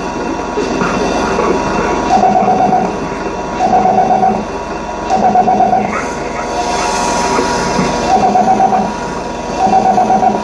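Harmonica blown into a microphone in short, wavering chords repeated about every second and a half, over a steady electronic drone and a dense noisy texture.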